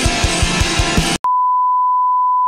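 Loud rock music with a fast, pounding kick drum cuts off abruptly a little over a second in. After a brief gap, a single steady electronic beep tone starts and holds.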